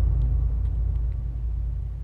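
Deep low rumble from a cinematic boom sound effect, fading slowly as it dies away.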